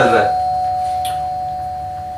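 Two-tone electronic chime, doorbell-style: a held higher note with a lower note sounding under it, both fading slowly.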